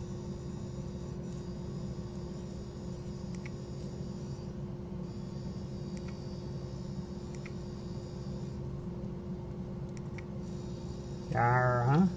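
A steady low electrical hum with one constant tone under faint room noise, and a few faint ticks. A man's voice comes in briefly near the end.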